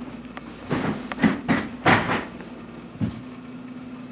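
Several knocks and clunks of bags and gear being handled on a metal luggage cart during packing up, bunched in the first two seconds with a softer knock about three seconds in, over a steady low hum.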